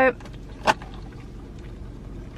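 Low steady hum of a car's cabin, with a single short click about two-thirds of a second in.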